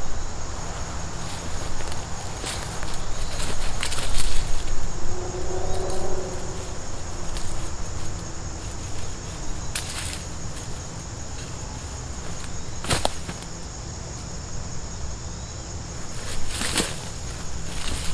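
Climbing rope being hand-coiled into a butterfly coil: soft rope swishes with a few sharp slaps and clicks scattered through, over a steady high chirring of insects.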